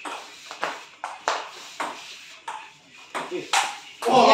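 Doubles table tennis rally: the ball clicking off the paddles and the table top, a sharp tick about every half second.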